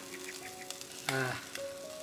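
Chicken wings sizzling on a charcoal grill, a faint steady hiss with small crackles. A short voice sound comes about a second in.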